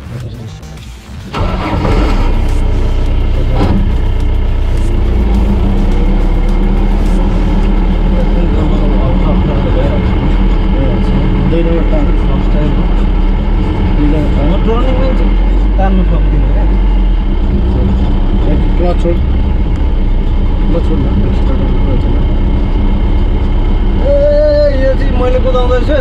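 Inside the cab of a moving pickup: steady engine and road rumble that starts loud about a second and a half in, with voices and some music over it.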